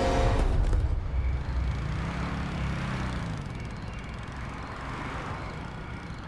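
Road traffic: a steady low rumble of vehicles. About two seconds in, one engine rises and then falls in pitch as it passes.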